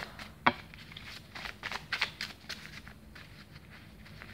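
A deck of oracle cards shuffled by hand, overhand, making a run of short card flicks and taps with one sharper snap about half a second in. The flicks thin out toward the end.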